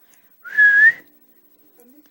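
A person's single short whistle, about half a second long, holding one note and rising slightly at the end, calling a dog.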